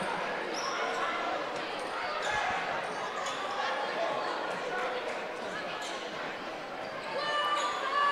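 Basketball being dribbled on a hardwood gym floor while the team holds the ball, under a steady murmur of crowd chatter in the gym.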